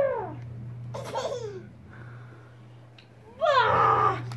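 A baby babbling and laughing in short squeals, the loudest near the end, over a steady low hum.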